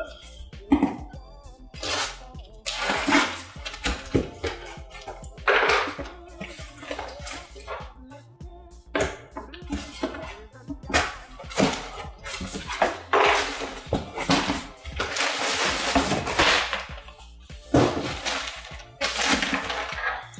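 A cardboard shipping box being opened: packing tape slit and torn off, cardboard flaps scraping and the wrapped backpack inside rustling, in loud irregular bursts, over background music.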